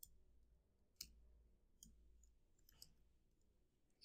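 Near silence broken by about four faint, isolated computer keyboard key clicks, the clearest about a second in.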